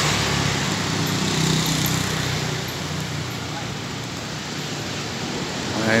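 Steady engine and road noise of a slowly moving vehicle in street traffic, a little louder in the first couple of seconds as a motorcycle passes close by.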